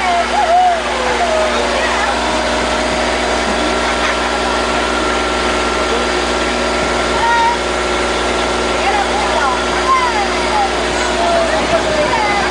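A boat's motor running steadily, an even hum under everything, with a small child's voice calling out briefly near the start and again near the end.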